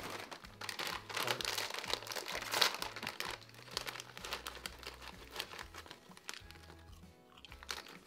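Wrapping paper and packaging crumpling and crinkling as a small present is unwrapped by hand. It is busiest in the first three seconds or so and sparser after. Background music with a low bass line plays under it.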